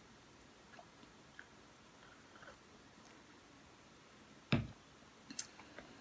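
Quiet room with faint, distant birds chirping outside. About four and a half seconds in comes a single sharp knock, followed by a few soft clicks near the end.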